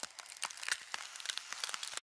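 Dense, irregular crackling, mostly high-pitched, that fades in and cuts off suddenly at the end.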